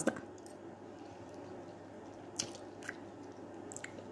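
A person chewing a mouthful of pasta, soft and wet, with a few small clicks near the end.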